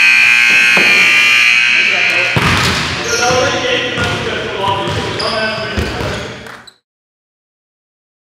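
Gym scoreboard buzzer sounding one steady, held tone to end the game, cutting off about two and a half seconds in. Voices carry on in the gym after it and fade out to silence near the end.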